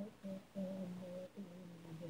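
A single unaccompanied voice humming a tune in held notes with short breaks, the pitch stepping down about three-quarters of the way through.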